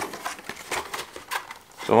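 Clear hard-plastic clamshell case of a carded toy car being pried open and handled: a run of small irregular clicks and crackles, with a brief lull near the end.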